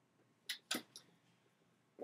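Three brief clicks and knocks in a quiet room, about half a second, three-quarters of a second and one second in.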